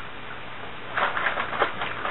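Faint room hiss, then soft rustling and handling knocks from about a second in as the camera is moved about.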